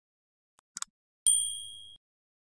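Two quick mouse-click sound effects a little under a second in, followed by a bright notification-bell ding that rings on two clear high pitches and fades until it is cut off. These are the clicks and bell of an animated like-and-subscribe button.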